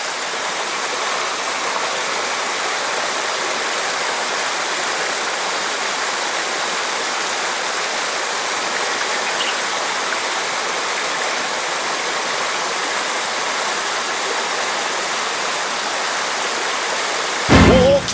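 Small waterfalls and cascades pouring into a rocky mountain-stream pool: a steady, even rush of water. Near the very end a sudden loud burst cuts in over it.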